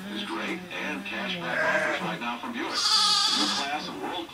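Cheviot sheep bleating at lambing time, with a talk-radio broadcast playing in the background.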